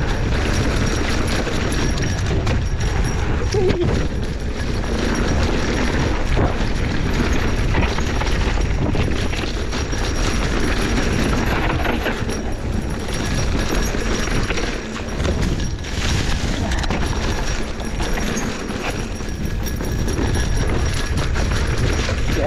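Mountain bike descending fast on a dirt singletrack: steady wind rush on the microphone and tyre noise on dirt, with constant irregular rattling and clatter from the bike over bumps.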